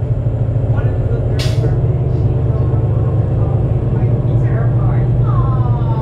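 Heavy, steady rumble inside a 2008 New Flyer D35LF bus from its Cummins ISL inline-six diesel and Allison B400R transmission under way. A short hiss comes about a second and a half in, and a whine falls in pitch near the end.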